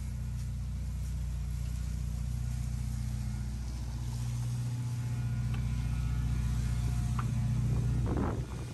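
Ferrari SF90's twin-turbo V8 idling with a steady low hum, growing slowly louder as the car's rear draws near.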